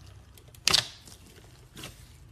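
A hand squeezing clear slime full of sprinkles makes a sharp, crackling squelch, like air pockets popping, a little under a second in. A softer squelch follows near the end.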